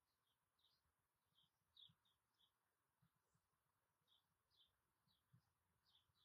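Near silence, with faint, short high chirps of distant birds scattered through.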